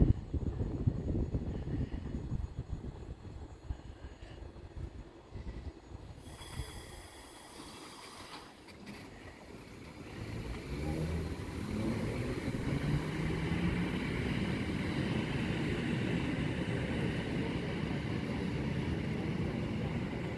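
EP2D electric multiple unit moving off from the platform: a low rumble at first, then, from about halfway, a steady electric hum with stepped, slowly rising tones from its traction motors and converters as it gathers speed.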